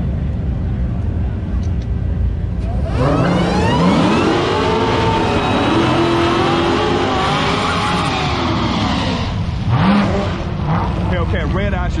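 V8 drag car revving hard through a burnout at the starting line, its tyres spinning: from about three seconds in the engine note climbs, wavers and falls for about six seconds over the low idle of the waiting cars, and a short rev follows near the end.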